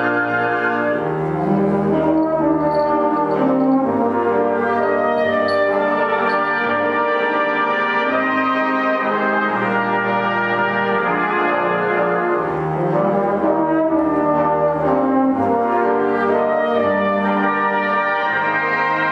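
Concert wind band playing a full sustained passage: held chords over low bass notes that change every second or two, at a steady, full volume.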